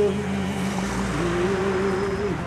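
Slow, sad-sounding music with long held low notes that shift pitch about a second in, over a rushing noise that swells and fades.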